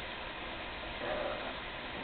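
Steady background hiss in a small room, with one short spoken word about a second in.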